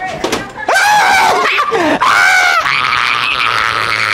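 A person screaming in loud, high-pitched yells, about three in a row, the pitch rising and falling, without words.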